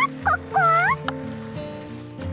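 Domestic hen giving three drawn-out calls in the first second: a rising one, a short one, then a longer call that dips and rises in pitch.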